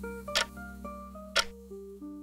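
Soft background music of held notes with a sharp clock-like tick about once a second, the ticking of a quiz countdown timer.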